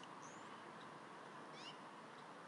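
Faint, high chirps from bald eagle eaglets begging while being fed, two brief calls, one just after the start and one near the end, over a steady background hiss.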